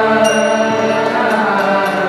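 Kirtan: a harmonium sustaining chords under group chanting, with a metallic strike that rings high about a quarter second in.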